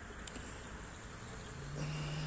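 Quiet, even outdoor background hiss with no distinct events. Near the end a man's voice starts a low, steady hum just before he speaks.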